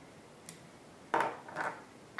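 Small handling sounds of fly-tying work at the vise: a faint click about half a second in, then two short scraping noises about half a second apart as the thread is finished off behind the hook eye.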